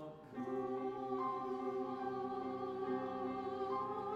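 Church choir singing slow, sustained chords; after a brief dip about a third of a second in, a new chord begins and is held.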